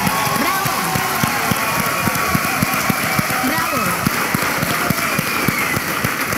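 Audience applauding and cheering, steady clapping throughout with voices calling out over it.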